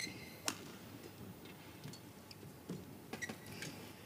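Badminton rally in an arena: a few sharp racket hits on the shuttlecock, the sharpest about half a second in, with short high squeaks of shoes on the court.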